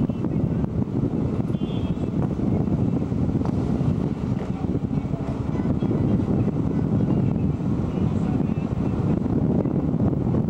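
Steady rumble of a car driving, heard from inside, with road and wind noise buffeting the camcorder microphone.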